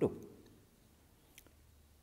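A man's voice finishing a word, then near silence with a single faint click about a second and a half in.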